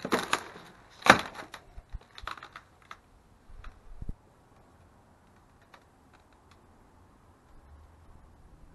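A run of sharp clicks and cracks of broken wood and debris, like boards and rubble crunching underfoot. They are loudest about a second in and thin out by about four seconds, leaving a faint room tone.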